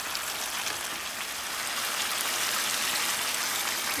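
Cauliflower florets frying in a hot pan: a steady sizzle with a few faint crackles.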